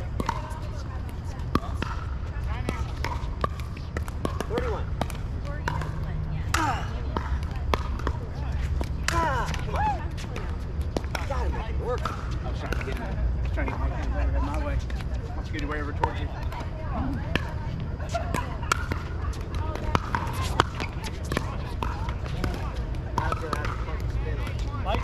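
Sharp plastic pops of pickleball paddles hitting the ball and the ball bouncing on the hard court, scattered at irregular times, over people talking and a steady low rumble.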